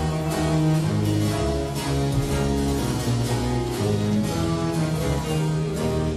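Baroque orchestra playing an instrumental ritornello: bowed strings over a sustained cello and bass line, with a harpsichord continuo plucking chords in a steady pulse.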